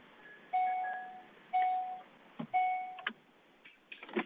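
Three electronic beeps about a second apart, each one steady tone that fades away, coming over an unmuted call-in line, with scattered clicks and knocks around them.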